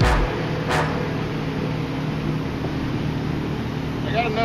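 Steady rush of moving water where the current breaks over a shallow bar, with wind buffeting the microphone. There is a low thump at the very start and two sharp clicks in the first second.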